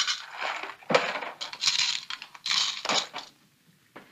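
A few sudden metallic clinks and rattles from a hand tool being worked into a sofa, about a second in and again twice between two and three seconds in.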